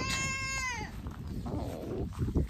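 A farm animal bleating once: a single drawn-out call of under a second that holds its pitch and then drops away at the end.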